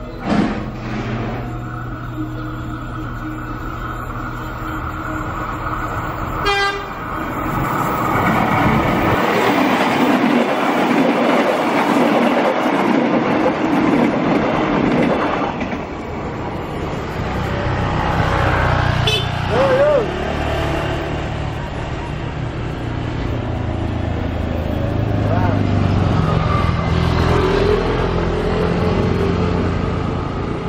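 A train passing over a level crossing, its rumble and clatter on the rails loud for about eight seconds in the first half. Afterwards motorcycle engines run as traffic moves across.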